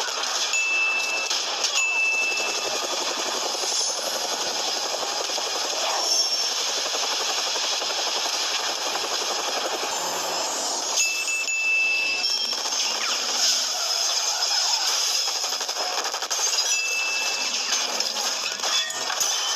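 Film soundtrack mix of sound effects and score: a dense, continuous wash of noise with a high steady tone that sounds in short spells, twice near the start, about eleven seconds in, and again near the end.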